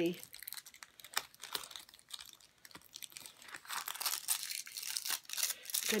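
Tape being peeled off the sides of a pack of paper, with the wrapping crinkling and tearing. It goes as a run of small crackles that thickens into a longer rip in the second half.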